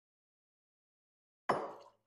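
Dead silence for about a second and a half, then a short splash of tequila tipped from a jigger onto ice in a rocks glass, starting suddenly and fading within about half a second.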